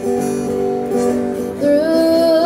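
Acoustic guitar strumming sustained chords, played live through a stage sound system; a boy's singing voice comes in about one and a half seconds in.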